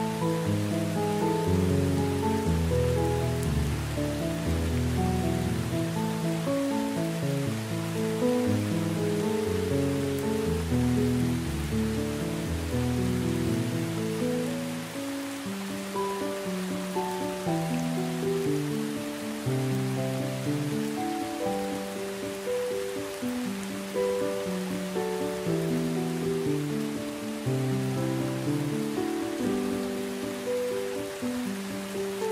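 Slow instrumental music of held notes, laid over a steady hiss of heavy rain. The lowest notes drop out about halfway through.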